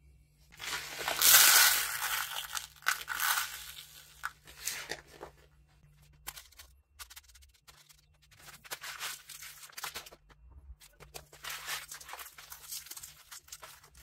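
Hands handling pitted black olives and coarse salt in a plastic tub: irregular crunching and rustling bursts, the loudest about a second in, with scattered smaller ones later as the salt is spread over the olives.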